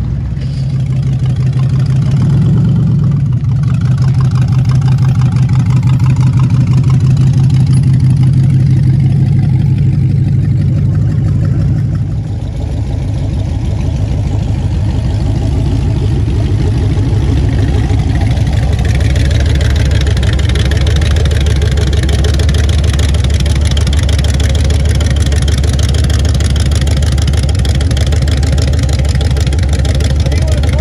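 Rat rod engines running loud and low as the cars roll slowly past at close range. About twelve seconds in, one engine note gives way to a deeper one, which runs on steadily.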